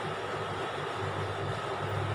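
Steady background noise: an even hiss with a low hum underneath, no distinct strokes or voices.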